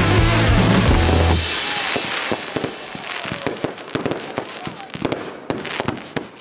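Music with a heavy bass line stops about a second and a half in, leaving fireworks going off: a dense run of sharp cracks and pops that thins out and fades toward the end.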